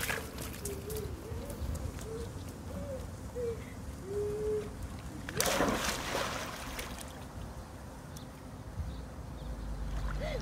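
A child jumping into a swimming pool: one short, loud splash about halfway through, then the water settling.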